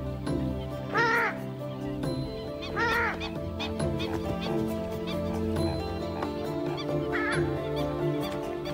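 Purple swamphen giving short honking calls three times, each a brief note that rises and falls, over steady background music.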